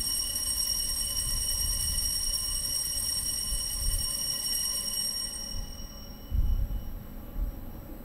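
Altar bell ringing at the elevation of the consecrated chalice: a high, steady ring that fades out about five and a half seconds in. A low thump follows a little after six seconds.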